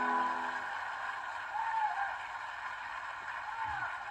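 A violin's final held note dies away within the first second. It leaves a steady hiss of a large outdoor crowd with a few faint distant voices.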